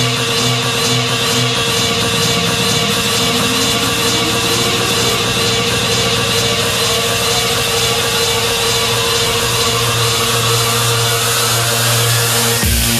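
Electronic dance music from a house/electro DJ set: a held synth tone over a steady low bass. A rising synth sweep enters about three seconds in and climbs steadily in pitch for the rest of the stretch, a build-up.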